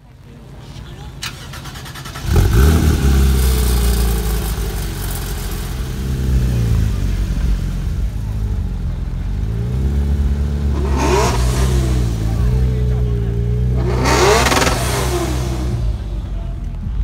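A sports car engine catches about two seconds in and settles into a loud, uneven high idle, its pitch wandering up and down. Two short rev blips rise in pitch near the end.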